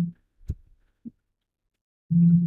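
A single soft thump about half a second in and a fainter low thud about a second in, with quiet between and after.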